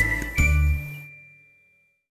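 Closing notes of a musical logo jingle: a final note with a bright, bell-like ding and a low bass note about half a second in, ringing on and fading away.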